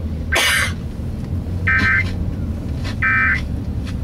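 Emergency Alert System end-of-message data bursts from a car's FM radio: three short buzzy squawks about 1.3 seconds apart, marking the end of the tornado warning broadcast. A steady low car rumble runs underneath.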